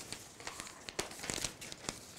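Loose sheets of printed paper rustling as they are handled and turned, a string of short, irregular rustles.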